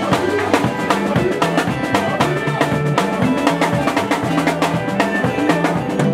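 Live band playing: a drum kit with cymbals keeps a steady beat over electric bass guitar and electric guitar.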